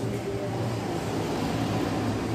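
A steady low hum with a hiss over it, with no sudden sounds.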